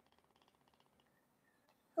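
Near silence: room tone, with a faint, rapid, even ticking in the first second.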